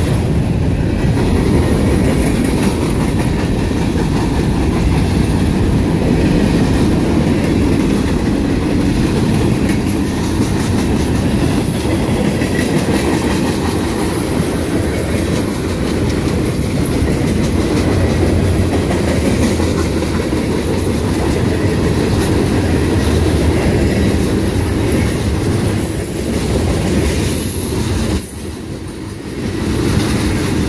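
Freight cars of a long mixed freight train rolling past close by: a steady rumble of steel wheels on rail with clickety-clack over the rail joints and occasional faint high wheel squeals. It turns briefly quieter about two seconds before the end.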